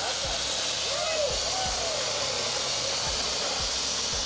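Ground fountain firework (flowerpot) spraying sparks with a steady, loud hiss, with voices calling out over it.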